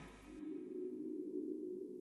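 Faint, steady low tone from the soundtrack's music underscore, entering about half a second in and holding a single sustained chord.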